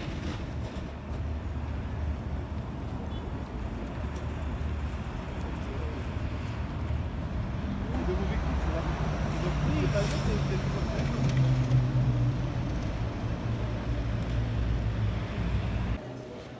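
Outdoor city ambience: road traffic running steadily with people's voices in the background. It grows louder about halfway through, with a low engine hum strongest around ten to twelve seconds in.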